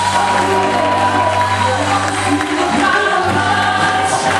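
Live gospel song: electric bass and acoustic guitar accompanying voices singing long, held notes over a steady bass line.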